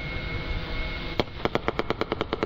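A hovering quadcopter's rotors running as an even noise, then about a second in a single sharp pop. Near the end comes a rapid, even string of pops, about ten a second: the multi-barrel pyrotechnic propeller-snare gun under the drone firing its shots in quick succession.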